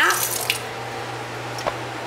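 Kitchen faucet running, a steady stream of tap water splashing into a sink basin, with a couple of faint small clicks.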